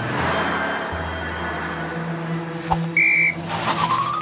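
A short, sharp blast on a police whistle about three seconds in, the loudest sound, over steady children's background music and the whoosh of cartoon cars driving past. Near the end a rising whistle glide follows.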